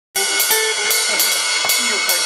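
A drum kit, cymbals and hi-hat to the fore, playing with an electric Stratocaster and a J-45 acoustic guitar in an instrumental jam that cuts in abruptly already under way. Cymbal strikes about every half second ring over a steady wash.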